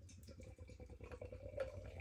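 Milk stout poured from an aluminium can into a glass: a faint gurgling and fizzing of liquid that grows louder as the glass fills.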